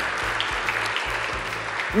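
Studio audience applauding, with background music playing underneath.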